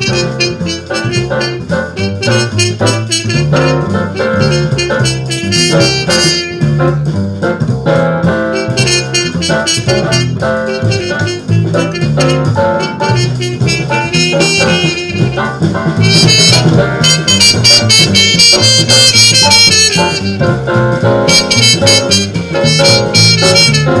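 Muted cornet playing a swing jazz melody over a backing band with a walking bass line.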